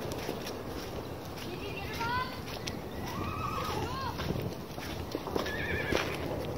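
A horse whinnying: a quavering, falling call about two seconds in that wavers on until about four seconds in, then another short call near the end.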